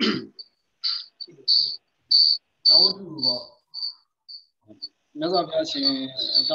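An insect, cricket-like, chirping in short repeated chirps at one high pitch, about two a second. A man's voice speaks briefly in the middle and again near the end.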